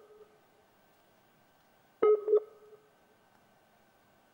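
A short electronic beep about two seconds in, a clipped pitched tone under half a second long, over a faint steady high tone, heard through a remote video-call link that is having trouble connecting.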